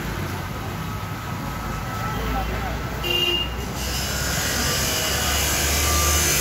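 Roadside street ambience: a steady low traffic rumble with indistinct voices in the background, and a hiss that comes up about four seconds in.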